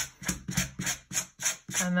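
A wire slicker brush drawn again and again through a lock of curly, purple-dyed mohair: a run of quick strokes, about five in two seconds.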